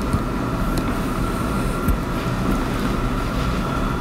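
Steady background hum and hiss, with a faint constant high tone and a low rumble, and no speech.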